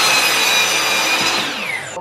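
Ryobi electric miter saw running at full speed and cutting a thin sliver off a pine board: a steady high whine over the rasp of the blade in the wood. Near the end the motor winds down, its whine falling and fading.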